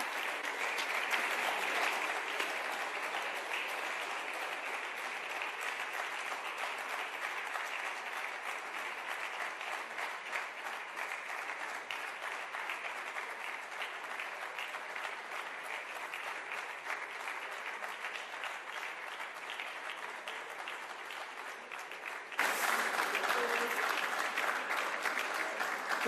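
Sustained applause from a chamber full of legislators clapping at the end of a speech. It goes on steadily throughout and jumps suddenly louder near the end.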